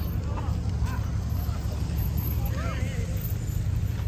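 Market ambience: a steady low rumble on the microphone, with a few faint short calls over it, about half a second in, at one second, and a clearer one near three seconds.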